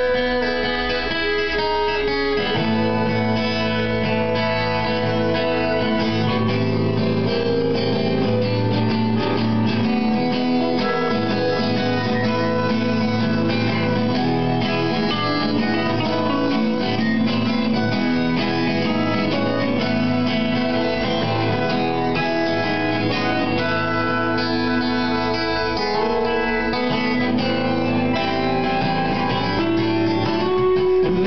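Instrumental music led by strummed guitar, playing steadily throughout. Lower notes fill in about two and a half seconds in.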